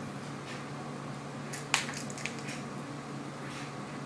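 A cat's paws and claws scraping and clicking on a laminate floor as it tussles with a toy mouse, with one sharp click a little under two seconds in and a smaller one just after, over a steady low hum.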